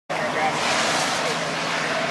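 Steady broad rushing noise from a Mercedes-Benz Sprinter van driving on pavement, mixed with wind on the microphone. Faint voices can be heard underneath.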